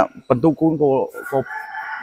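A few words of a man's speech, then a drawn-out animal call in the background from about a second in, held steady.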